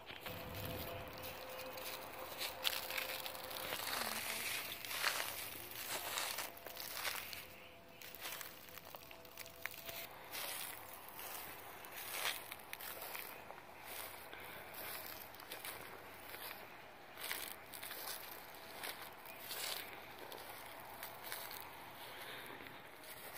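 Footsteps crunching through dry fallen leaves, an irregular run of crackling steps.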